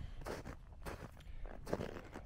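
Footsteps crunching in snow, a step about every half second.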